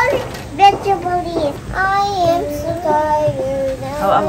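A young girl singing a wordless tune, short notes at first, then longer held notes from about halfway through.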